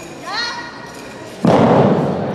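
A short rising shout, then about one and a half seconds in a loud thud on the competition mat during a wushu spear routine, with a slow fade in the hall.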